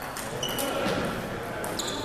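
Table tennis balls clicking irregularly against tables and paddles from rallies at nearby tables, with a couple of short high squeaks, over the hum of voices in a large echoing gym.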